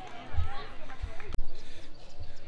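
Footsteps thudding on carpeted bleacher aisle steps, about three dull thumps, one with a sharp click, with faint crowd voices behind.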